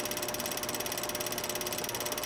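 A steady, rapid mechanical clatter in the manner of a film projector running, with evenly spaced clicks about a dozen or more a second and a faint steady hum under them. It is a sound effect laid under an end card.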